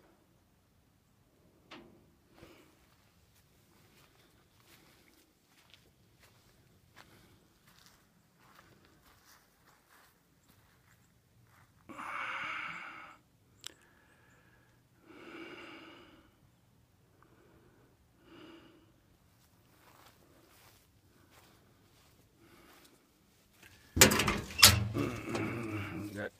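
Mostly quiet with faint scattered ticks and scuffs and two soft one-second rushes of noise in the middle. In the last two seconds, the loudest part, a steel side toolbox door on a truck is unlatched and swung open with sharp metal clanks and rattles.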